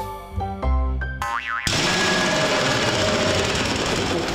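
Cartoon music of short plucked notes with a springy boing glide about a second in, then a loud steady rushing noise with a wavering tone beneath it from about one and a half seconds on.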